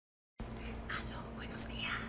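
A woman whispering a few breathy words, over a faint steady low hum.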